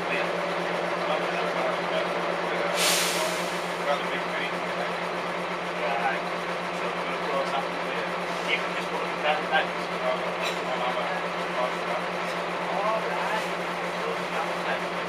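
Bus cabin noise with the engine's steady low drone. About three seconds in, a sudden hiss of compressed air from the bus's air system fades out over about a second.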